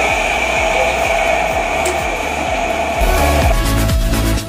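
Background music with a steady beat under a sustained even tone; about three seconds in it changes to a louder dance track with heavier bass.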